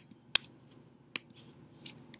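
A few sharp, separate clicks from a computer keyboard and mouse as the code is edited, the loudest about a third of a second in.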